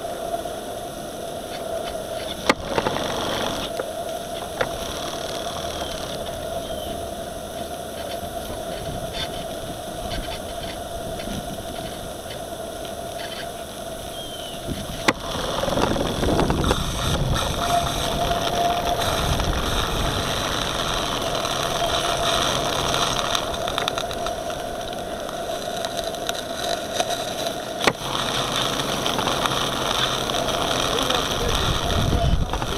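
Small live-steam model boat running under way: a steady engine sound with a constant tone over water and wind noise, which grows louder about halfway through, with a few sharp clicks.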